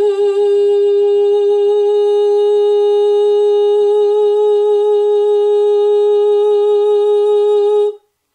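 A woman's voice holding one long, steady note for about eight seconds, with only a slight waver, as she tries to keep it dead in tune against a chromatic tuner; it cuts off just before the end.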